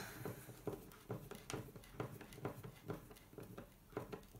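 Hand screwdriver turning a small screw into a plywood frame, a run of faint small clicks and creaks, about three or four a second, as the screw is tightened.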